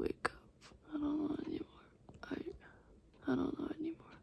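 A young woman's sleepy whispered mumbling in two short phrases, with a couple of faint clicks near the start.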